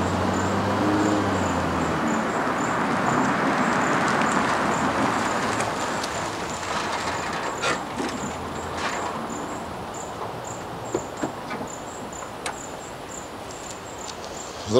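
An SUV drives up and slows to a stop, its engine and tyre noise swelling over the first few seconds and then dying away. Crickets chirp steadily throughout, and a few short clicks and knocks come in the second half.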